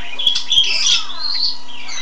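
A bird chirping and squawking in quick, warbling high calls that glide up and down, with a couple of sharp clicks about half a second in, over a faint steady hum.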